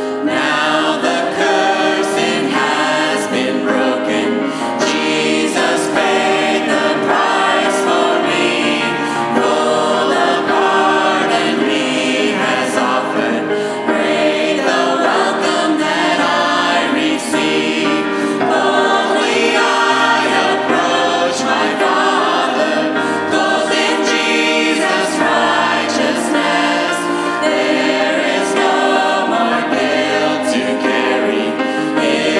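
A small vocal group, three women and a man, singing a worship song in harmony to grand piano accompaniment; the voices come in at the very start over the piano.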